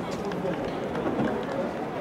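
Voices talking over the open-air ambience of a football stadium.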